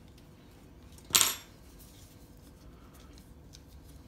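A small metal cutting blade set down on a hard tabletop about a second in: one sharp clink that rings briefly, followed by faint ticks of the leather strap being handled.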